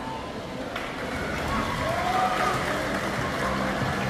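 Spectators cheering and shouting in an echoing indoor pool hall during a sprint swimming race, the noise swelling over a few seconds.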